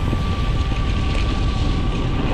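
Wind buffeting the microphone over the steady rumble of a mountain bike rolling fast on a dirt trail, with a faint steady high tone running through.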